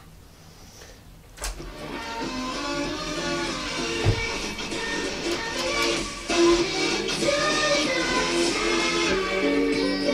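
Sony CFD-S05 boombox playing a cassette through its built-in speakers. After a quiet second and a click, music starts about a second and a half in and plays on. It is the cassette deck working properly in tape mode.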